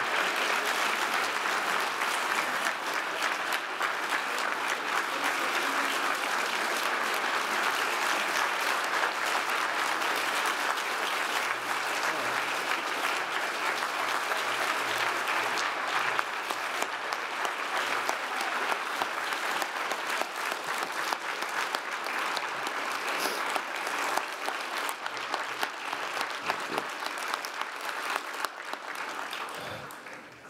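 Audience applauding without a break, thinning out near the end.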